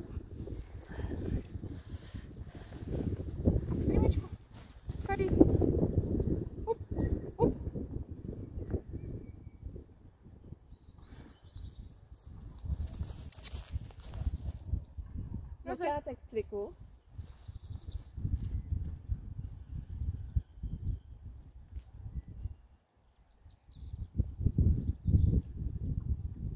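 Wind buffeting the microphone in gusts, with a brief wavering voice-like sound about sixteen seconds in.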